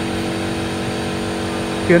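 A steady drone of several constant low pitches held at an even level, with no breaks or changes; a word of speech comes in at the very end.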